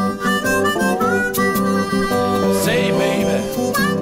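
Blues instrumental break: a harmonica playing held and bent notes over acoustic guitar accompaniment.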